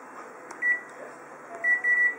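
Colour photocopier touchscreen beeping as its buttons are pressed. One short high beep comes about half a second in, then two quick beeps near the end, over a steady background hum.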